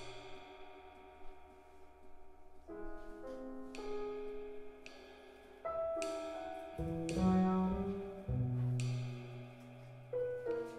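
Live jazz trio: a Yamaha keyboard piano plays sustained chords and melody notes, with light cymbal strokes from a drum kit. Low double bass notes come in strongly about seven seconds in.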